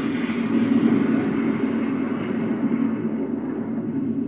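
Explosion sound effect in its long rumbling tail, steady and slowly fading.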